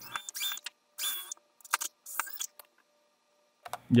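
A handful of short metallic clicks and clinks from pocket-door track hardware being handled overhead, several with a brief high ring, stopping abruptly after about two and a half seconds.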